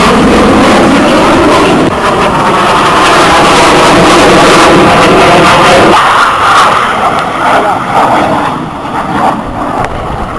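Military jet aircraft flying past: very loud, steady jet engine noise with a faint whine in it, which drops suddenly about six seconds in and then wavers, quieter.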